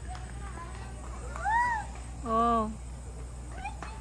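A cat meowing: one rising-and-falling meow about a second and a half in.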